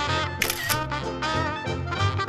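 A toy camera's shutter click sound about half a second in, over background music.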